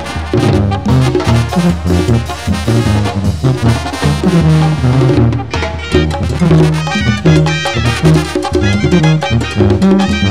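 Sinaloan banda brass band playing a medley: a tuba bass line bounces under trumpets and other brass, with drums keeping a steady beat.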